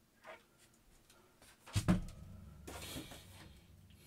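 Handling noise: a sharp knock about two seconds in as the plastic Bat-Pod collectible model is set down on the tabletop, then a brief rustle of the paper instruction sheet being picked up.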